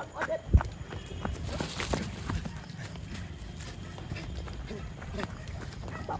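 Running footsteps on a dirt path: irregular soft thuds, about two or three a second, with a heavier thump about half a second in.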